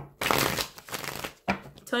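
Deck of tarot cards being shuffled by hand: a dense rustling flutter of cards lasting about a second and a half.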